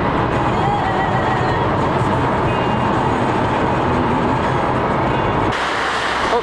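Steady road and engine noise of a car driving, with music faintly underneath; it cuts off suddenly about five and a half seconds in.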